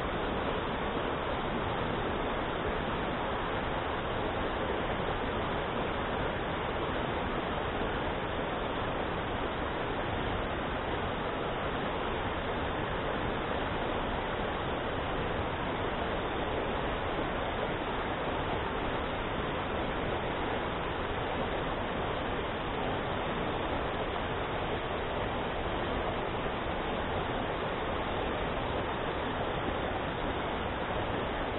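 Mountain stream rushing over rocks in shallow rapids: a steady, unbroken rush of water.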